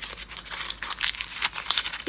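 Paper cupcake liner crinkling as it is bunched up between the fingers: a rapid, irregular run of small crackles.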